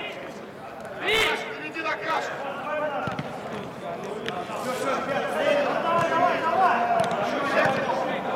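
Football players shouting and calling to each other during a match, several voices overlapping and echoing in a large hall, with one loud high-pitched call about a second in. A few sharp knocks of the ball being kicked come through around the middle.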